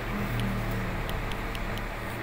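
Steady rushing outdoor background noise, with a faint low hum in the first half and a few faint light ticks.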